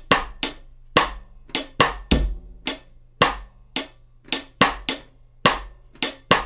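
Drum kit groove: steady hi-hat strokes over bass drum, with snare accents played cross-stick (stick laid across the head, clicking the rim) on syncopated sixteenth-note offbeats, the second sixteenth of beat three and the fourth sixteenth of beat four.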